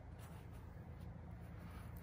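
Faint, steady low hum with no distinct events.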